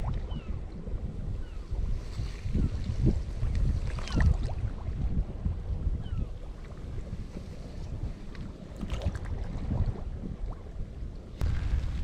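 Wind buffeting the microphone over water washing among broken sea-ice pans in a light swell, with a few faint short knocks and squeaks.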